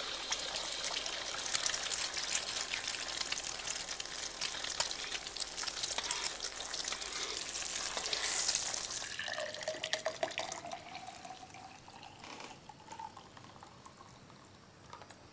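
An egg frying in hot oil in a wok: a dense, crackling sizzle with the scrape of a metal spatula. About nine seconds in, this gives way to milk being poured from a carton into a glass, its pitch rising as the glass fills.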